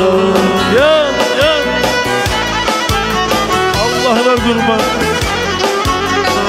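Black Sea kemençe playing an ornamented instrumental melody with quick sliding pitch bends, over a steady percussive beat.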